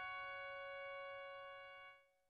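The final piano chord of a song ringing out softly and slowly decaying, then cut off suddenly near the end.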